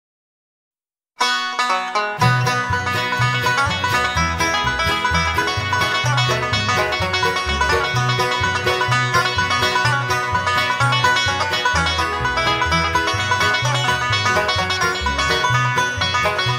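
Bluegrass instrumental led by rapid banjo picking, starting about a second in, with a bass line joining a second later.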